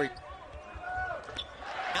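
Broadcast game sound from a college basketball game: a basketball bouncing on the hardwood court, with a few short knocks and faint court noise under the play.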